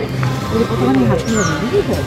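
Several people talking close by, overlapping voices without clear words, with steady music-like tones underneath.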